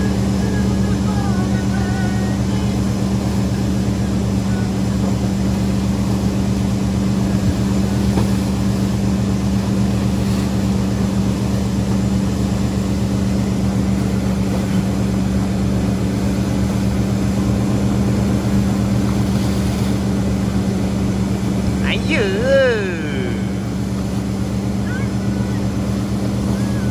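Wake surf towboat's engine running at a steady speed, a constant drone. About 22 seconds in, a person's short call rises and falls over it.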